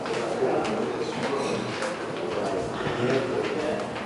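Indistinct low murmur of several voices talking at once in a room, with no single clear speaker.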